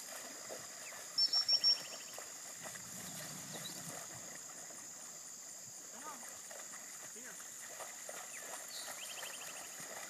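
Outdoor countryside chorus: a steady high insect drone, with a bird giving a quick series of four loud high notes about a second in and a shorter series near the end, and other faint chirps.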